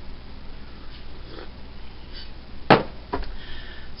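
Quiet sipping from a ceramic mug of tea, then a sharp click and a softer thud about three seconds in as the mug is set down.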